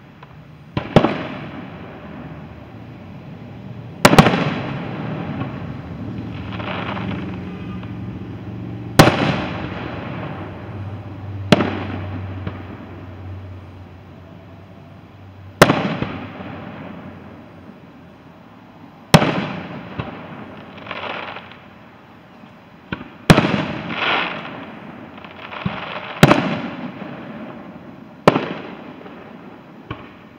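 Aerial fireworks shells bursting: about ten sharp bangs a few seconds apart, each trailing off in a rolling echo.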